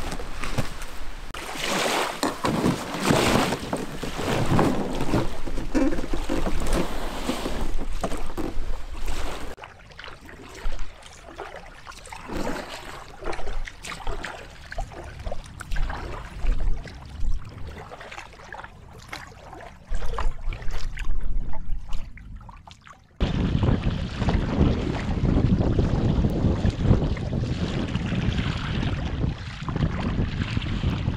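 Canoe paddling on a windy lake. Short, irregular splashes of paddle strokes in the water, then, from about three quarters of the way in, steady wind buffeting the microphone over the lap of small waves against the hull.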